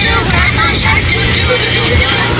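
Background music: a song with a singing voice over a steady beat.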